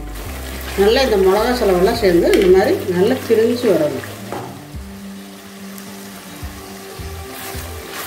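Thick chilli masala sizzling gently in oil in a clay pot, stirred now and then with a wooden spatula, as the oil starts to separate from the masala. A voice talks over it for the first few seconds; after that the soft frying goes on alone.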